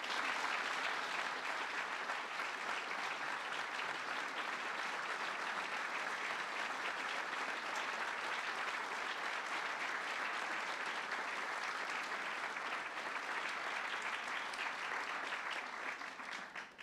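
Audience applause, a dense steady clapping that begins abruptly and dies away near the end.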